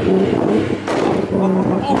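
Nissan Skyline R34 GT-T's turbocharged straight-six revved hard and held at high revs while parked, with a sharp bang from the exhaust about a second in.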